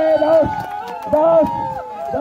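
A crowd of men shouting a chant of held, drawn-out calls, each about half a second long and repeated roughly once a second.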